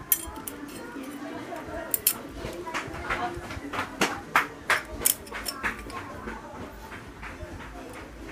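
Yamaha SZ clutch friction plates and steel plates clinking against each other as the stack is handled, about a dozen light, irregular metal clinks.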